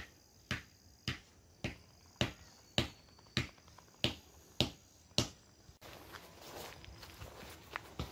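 Footsteps at a steady walking pace, a sharp slap about twice a second. A little before the end a steady background hiss comes up and the steps grow fainter.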